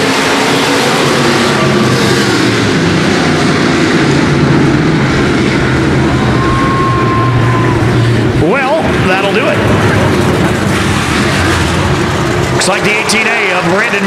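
Several USRA dirt-track stock cars' V8 engines running at speed together, a dense steady engine din. About eight and a half seconds in, the low rumble dips and one engine revs up sharply.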